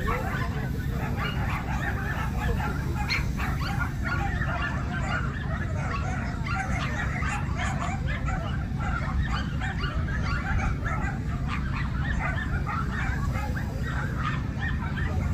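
Many dogs barking at once, a dense, continuous chorus of overlapping barks with no single dog standing out, over a steady low rumble.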